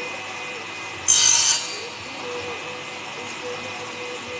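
Table saw running steadily, with one brief, loud, high-pitched cut about a second in as a thin strip of wood is fed through the blade.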